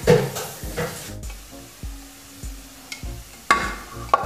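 Ground keheraj (false daisy) leaf paste sizzling and bubbling in an aluminium kadai as a spatula stirs it, with a couple of louder knocks, one near the end. Background music with a steady beat plays throughout.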